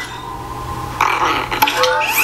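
Baby Yoda's small creature vocalization from the trailer soundtrack, starting about a second in over a low hum.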